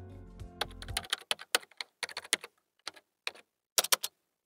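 Computer keyboard typing sound effect: a run of quick, irregular key clicks lasting about three seconds, stopping just before the end. Background music ends about a second in.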